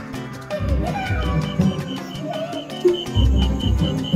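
Cartoon background music with a Latin-style beat and low bass notes, with a row of short high beeping notes in the second half.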